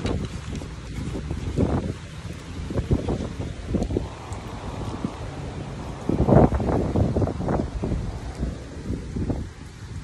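Wind buffeting the phone's microphone in uneven gusts, a low rumble with the strongest gust about six to seven and a half seconds in.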